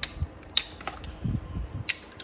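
Chrome-steel socket set parts being fitted together by hand: a few sharp metal clicks as the extension bar snaps into the ratchet handle and a socket, with soft handling knocks between them.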